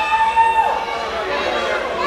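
A single voice holds a long shout that rises into a steady high note and drops away less than a second in. Faint voices murmur underneath it.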